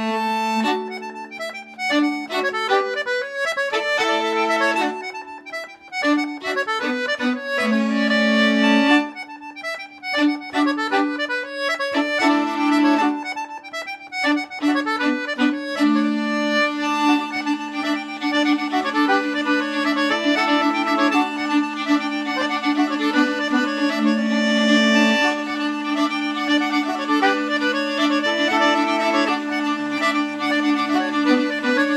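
Folk quartet of soprano saxophone, fiddle, accordion and hurdy-gurdy playing a tune over the hurdy-gurdy's steady drone, with the accordion prominent. The first half goes in choppy, stop-start phrases with short breaks; about halfway through the playing turns continuous.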